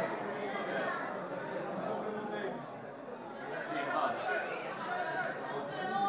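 Spectators' chatter: several voices talking at once close by, easing off briefly mid-way and then picking up again.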